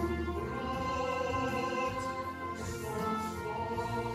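A man singing long held notes to a musical accompaniment with choir-like voices, the melody moving to new notes about two and three seconds in.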